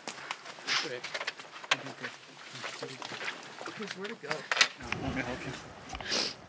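Quiet, emotional talk between a man and a woman, with a few sharp clicks; a low rumble comes in near the end.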